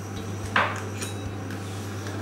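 A small glass jar of chutney handled on the cutting board: one brief clink-and-scrape about half a second in, over a steady low hum.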